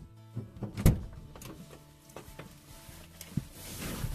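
Car driver's door being opened and a person climbing into the seat: a sharp latch click about a second in, then small knocks and clothing rustle, with a thump on the seat near the end.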